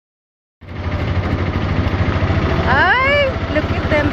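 Vehicle engine idling with a steady low rumble that begins about half a second in. Near the three-second mark a short high-pitched cry rises and then falls.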